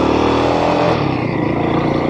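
Royal Enfield Himalayan 452's single-cylinder engine accelerating away from a stop, its pitch rising, then dipping briefly about a second in before running on steadily.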